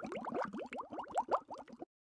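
Bubbling sound effect: a quick run of short rising bloops, several a second, that cuts off suddenly near the end.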